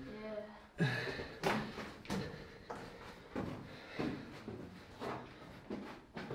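Footsteps on the dirt-and-rock floor of a narrow mine tunnel at a steady walking pace, a little under a second apart, each with a short echo off the rock walls. A man says "yeah" and sighs about a second in.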